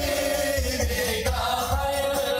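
Sholawat (Islamic devotional chant) sung by voices in a slow, sustained melody over a steady beat of low hand drums, about three strokes a second, played loud through a stage sound system.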